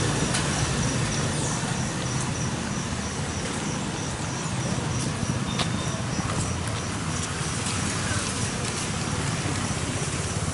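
Steady low background rumble with a few faint ticks.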